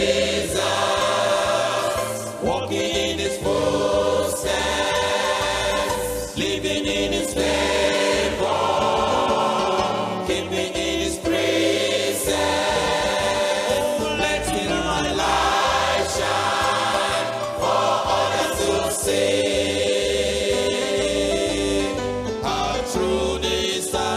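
Large mixed church choir singing a gospel song with instrumental accompaniment underneath, the voices moving in long phrases over a changing bass line.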